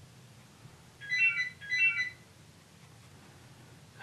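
Landline telephone ringing with an electronic double ring: two short rings close together about a second in, from an unanswered incoming call.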